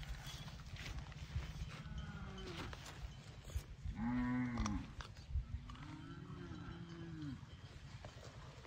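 Cattle mooing: several drawn-out calls that rise and fall in pitch, the loudest about four seconds in. Under them is a steady low rumble, with a few sharp knocks.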